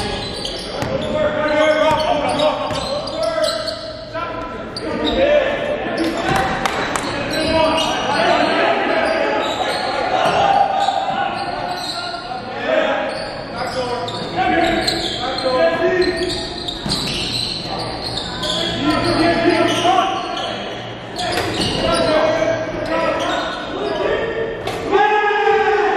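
Live basketball game sound in a gymnasium: a basketball bouncing on the hardwood court among players' voices calling out, in a reverberant hall.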